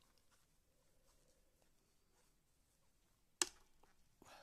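Near silence with faint handling sounds of a crochet hook working yarn, and one sharp click about three and a half seconds in.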